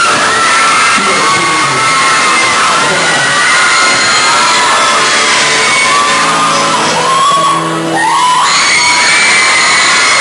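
Live acoustic guitar and male vocal performance, with an audience screaming and whooping in many overlapping high-pitched calls over the music.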